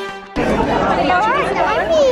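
Music that cuts off about a third of a second in, giving way to the chatter of a crowd, with overlapping voices including a child's high-pitched voice.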